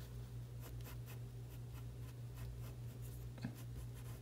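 Pencil scratching faintly on paper in short, irregular strokes as a small oval is drawn.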